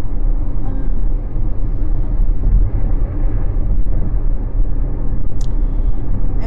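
Inside a moving car's cabin: steady low road and engine rumble.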